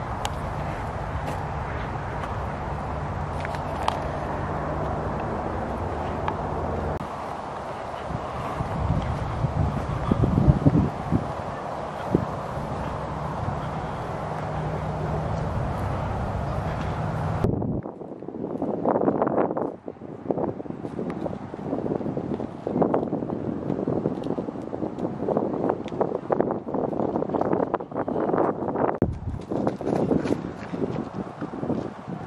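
A steady low mechanical drone under a wash of wind for the first half. After a sudden cut, gusty wind buffets the microphone unevenly.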